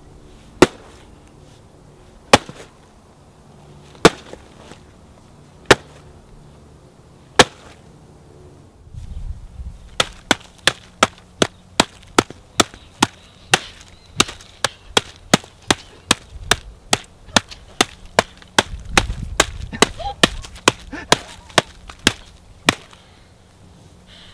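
A wooden stick striking a box of Otter Pops freezer pops and their plastic tubes on grass. It starts with five single hard blows spaced well apart, then becomes a fast flurry of strikes at about two a second that stops shortly before the end.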